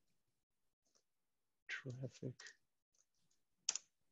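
Quiet computer clicks: a few faint ticks, then one sharp click near the end as a browser page is opened. A short murmured word comes just before halfway.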